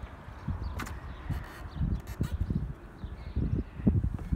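Irregular low thumps of footsteps on a yacht's fibreglass deck, with a sharp click about a second in.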